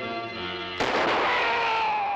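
Dramatic orchestral score, then a little under a second in a single loud rifle shot that cracks and dies away over about two seconds, with the music going on under it.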